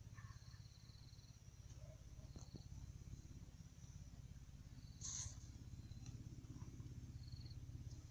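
Faint outdoor background: insects chirping in short high trills over a low steady rumble, with one brief louder rustle about five seconds in.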